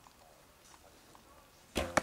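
A longbow shot near the end: the string is released with a short ringing twang, and a fraction of a second later comes a sharp smack as the arrow strikes the foam 3D target.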